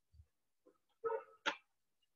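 Hands tapping two inflated balloons: a soft low thump near the start, a brief faint pitched sound just after a second in, then a sharper tap about one and a half seconds in.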